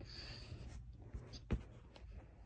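Faint rustling and scratching from a phone being handled as it swings, with a few light clicks and one sharper knock about one and a half seconds in.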